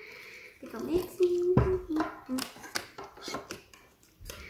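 A quiet child's voice murmuring, with light clinks and taps of a metal spoon against a ceramic cup as slime glue is stirred.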